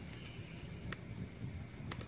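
A lock pick working the pins of a brass 5-pin Yale-style pin-tumbler cylinder under tension: a few faint, irregular sharp clicks, the clearest one near the end.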